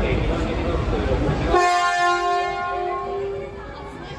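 Shinkansen N700S horn sounding one long, steady blast of about two seconds, edited in over the platform noise, which cuts out abruptly when the horn begins about a second and a half in. Before it, station platform noise with voices.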